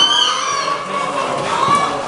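Poultry-show hall full of crowd chatter, with chickens calling and a rooster crowing, one curved call at the start and another near the end.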